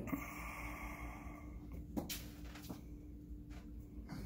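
Quiet room tone with a steady low hum, a soft hiss over the first second or so, and a faint tap about halfway.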